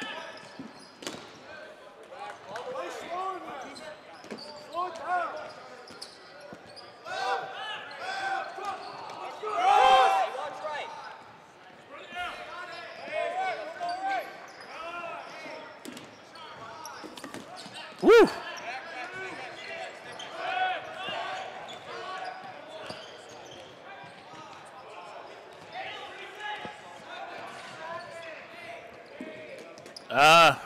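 Dodgeballs thrown and bouncing on a hardwood gym floor, mixed with players' shouts and calls in a large gym hall. The loudest sound is a single sharp smack of a ball about eighteen seconds in.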